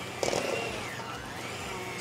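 Electric hand mixer running with its beaters in a stainless steel bowl, creaming cream cheese and goat cheese; the motor's pitch slowly rises and falls as the load changes.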